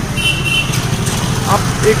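Busy street traffic with a steady low engine rumble, and a short high-pitched beep lasting about half a second near the start.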